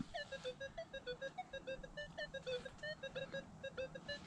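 Minelab X-Terra Pro metal detector sounding a rapid string of short beeps, about five a second, their pitch stepping slightly up and down. This is its target tone responding to a silver dime under the coil, 'hitting it a little bit'.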